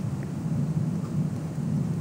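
Steady low rumbling background noise, the room tone of the recording, in a pause with no speech.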